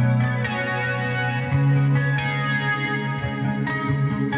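Solar electric guitar playing ringing, sustained notes in an instrumental metal song, with a new note or chord struck about every second.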